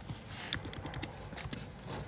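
Scattered light clicks and taps of small objects being handled close to the microphone, several short separate ticks with no rhythm.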